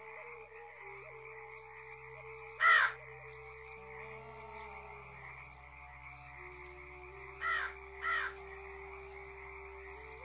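Three loud crow caws, one about three seconds in and two in quick succession near the end, over a steady background drone of held tones.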